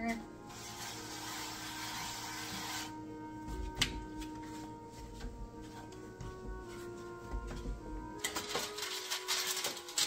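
Soft background music with held notes. Over it, for the first few seconds, a plastic cutting board scrapes and rubs as it is pressed over cookie dough; parchment paper crinkles near the end.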